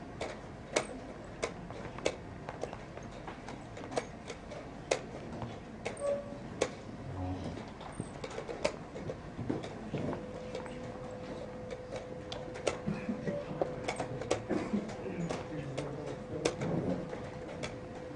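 Chess pieces being set down on a board and chess clock buttons pressed in quick turns during a blitz game: a run of sharp clicks and knocks that come faster in the second half. A faint steady hum starts about halfway through.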